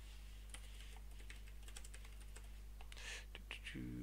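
Faint typing on a computer keyboard: an irregular run of quick key clicks.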